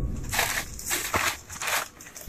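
Crumpled kraft packing paper crinkling and rustling in irregular bursts as a ferret burrows through it in a cardboard box, with a low rumble under the first half.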